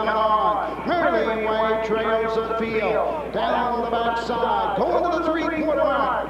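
A man's voice calling a harness race, with long drawn-out notes and gliding pitch.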